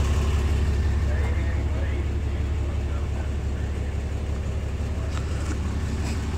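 A Cummins turbo-diesel straight-six truck engine idling, a steady low drone.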